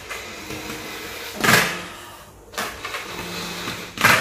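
A person blowing up a large metallic latex balloon by mouth: breathy gusts of air, the loudest about a second and a half in and a weaker one about a second later.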